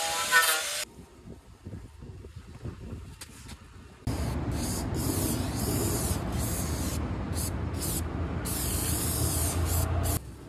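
Angle grinder whining against the rusty steel of a truck's cab sill, cutting off just under a second in. From about four seconds in, an aerosol spray can hisses in a run of bursts with short breaks as black paint is sprayed onto the ground-back sill and frame.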